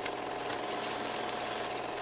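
Steady low hum and hiss with a faint steady tone, with no voice or music: the background noise of the narration recording, heard in a pause between spoken lines.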